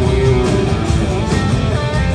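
Rock band playing live, with acoustic and electric guitars strumming over bass guitar and drums at a steady, full level.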